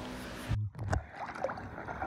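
A steady, muffled underwater hum that stops suddenly about half a second in. After it, swimming pool water lapping and sloshing faintly at the surface, with a few small ticks.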